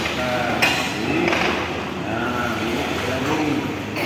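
Indistinct voices, several short calls with no clear words, over a steady low background noise.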